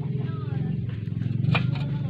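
An engine idling with a steady low, evenly pulsing hum, and a single sharp knock about one and a half seconds in.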